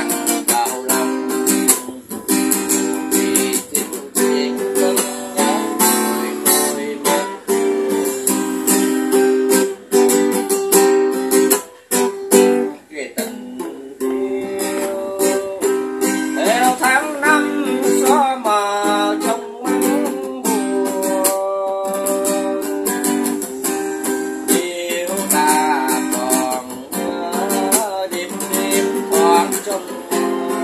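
Steel-string acoustic guitar strummed in a steady bolero rhythm, with a man singing along over it.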